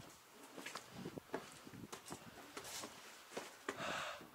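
Faint, irregular footsteps scuffing and tapping on stone steps, with a brief louder rustle near the end.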